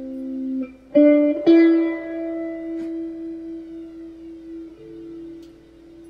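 Slow guitar music: single plucked notes left to ring out, with fresh notes struck about a second in and again shortly after, then a lower note near the end.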